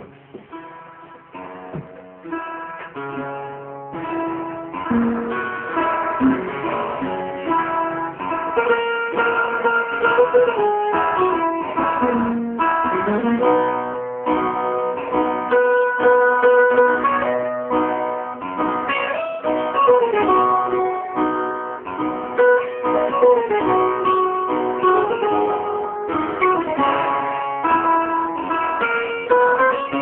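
Acoustic guitars playing a Maltese għana prejjem, the instrumental guitar passage of għana: a quick picked melody with some sliding notes over a strummed accompaniment. It starts softer and fills out after about four seconds.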